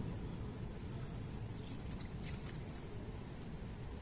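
Water poured faintly from a bucket onto a carp lying in a padded unhooking cradle, wetting the fish, over a steady low rumble.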